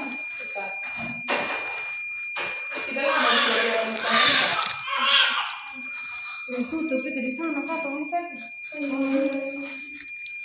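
Human voices with long held vocal sounds in the second half and breathy stretches in the middle, over a steady high-pitched electronic whine.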